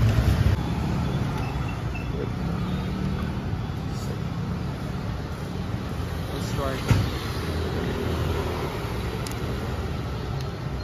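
City street traffic noise, a steady rumble of passing vehicles, with indistinct voices in the background. A brief sharp sound stands out about seven seconds in.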